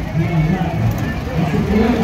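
A car engine running as a vehicle goes by, mixed with a babble of people's voices.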